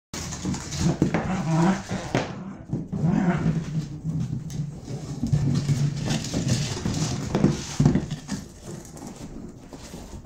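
Dog growling in play, in several low, drawn-out stretches while mouthing and shaking a stuffed toy, with a sharp thump about eight seconds in.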